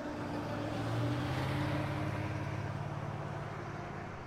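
A low, steady rumbling drone under a rushing noise that swells about a second in and then slowly fades, heard with the closing channel logo.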